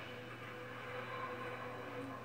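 Television programme soundtrack playing through the TV's speakers: a steady rushing noise with a held tone under it, over a constant low hum.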